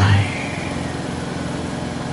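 Steady low hum of a running motor or engine, with a fast, even pulse, as the tail of a spoken word dies away at the start.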